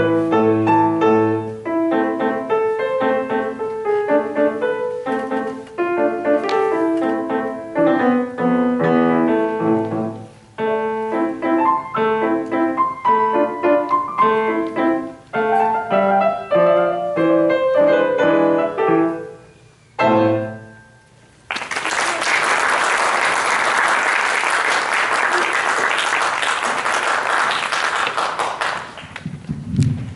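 Solo grand piano playing a classical piece, ending on a final chord about two-thirds of the way through. After a short pause, the audience applauds for about seven seconds.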